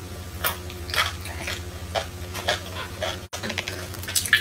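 Close-up biting and chewing of chewy spicy strips eaten with chopsticks: a string of short, wet crunches and mouth clicks, each under a second apart. A steady low hum runs underneath.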